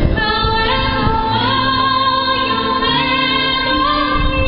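Female soprano singing live into a handheld microphone over instrumental accompaniment, amplified through the stage speakers. She holds a long note with vibrato that steps up about a second in.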